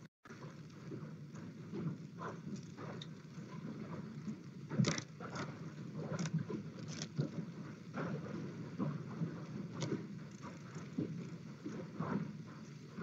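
Faint background noise from an open microphone with scattered soft clicks and knocks, about a dozen over the stretch, the strongest about five seconds in.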